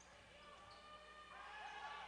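Faint basketball-arena sound from the court: a ball bouncing, distant voices, and thin wavering squeak-like tones.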